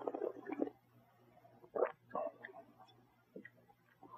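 Faint mouth sounds of a sip of red wine being worked in the mouth and swallowed: a few short, soft sounds in the first second and again around two seconds in.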